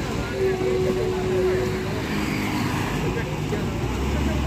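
Heavy diesel cargo truck running close by, a steady low rumble, with road noise and faint voices over it. A held tone sounds in the first half.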